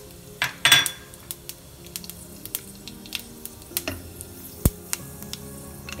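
Whole cumin seeds spluttering in hot ghee in a kadai: scattered sharp crackles and clicks, with a couple of louder clinks of utensils against the pan. Faint background music underneath.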